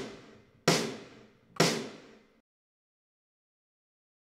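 Sampled snare drum hits from a software drum kit, triggered from an electronic drum pad: three strikes about a second apart, the first right at the start, each ringing out briefly. No tom sounds with them, because crosstalk cancellation is filtering out the tom's false triggers.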